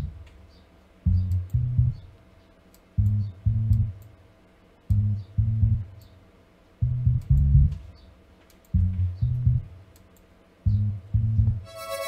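FL Studio's BooBass plugin playing a short synth bass line alone: pairs of short low notes repeating about every two seconds.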